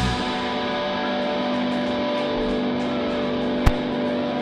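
Electric guitar notes ringing out through the amplifiers as a rock band's song ends, held as steady sustained tones without drums. A single sharp click comes near the end.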